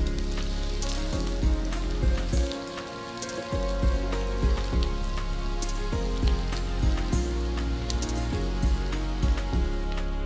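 Oil sizzling with frequent small pops as semolina gulab jamun balls deep-fry in a pan. Background music with a steady beat plays underneath.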